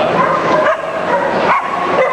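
A dog barking and yipping excitedly, with sharp high yelps about two-thirds of a second and one and a half seconds in, over the steady background noise of a busy show hall.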